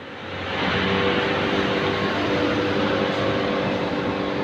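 Steady factory machinery noise with a low, even hum, growing louder under a second in and then holding.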